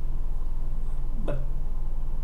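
A steady low hum runs under a pause in a man's speech, with a single short spoken word about a second in.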